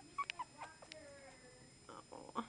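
Chihuahua puppy whimpering: a thin, falling whine about a second in, after a few sharp clicks and knocks in the first second.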